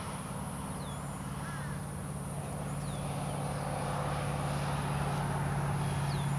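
A steady low motor hum, growing slightly louder toward the end, with a constant high hiss and a few faint, short, falling chirps from birds.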